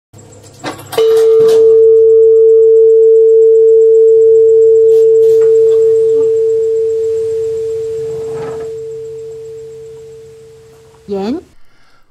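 Hanging bronze bell struck once about a second in, ringing with one clear steady tone that slowly fades away over about ten seconds. A short rising swoop comes near the end.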